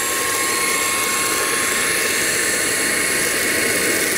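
Tefal Air Force 360 Light Aqua cordless stick vacuum running steadily with a high whine, its roller-brush head sucking up white powder from a hard marble floor.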